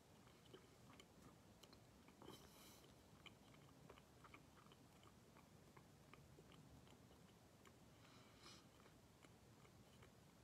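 Near silence with faint mouth clicks from chewing motions on an empty mouth (pretend bubble gum), a few a second, and two soft hissy puffs, likely breaths, about two seconds in and near the end.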